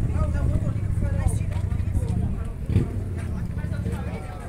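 Indistinct voices of several people talking, over a steady low rumble.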